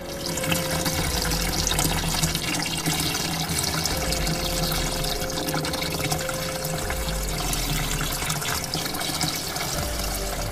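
Water running steadily from a tap.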